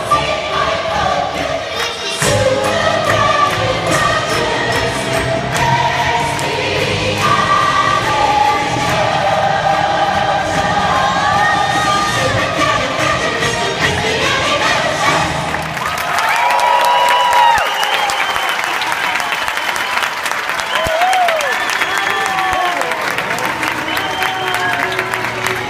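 Show music with choir singing plays loud through the arena sound system. About two-thirds of the way in the music breaks off, and the audience cheers and claps, with shouts and whistles rising and falling over the applause.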